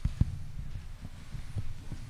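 Low thumps and bumps picked up by a table microphone as it is handled or knocked, with one sharp thump about a quarter of a second in and several softer ones after.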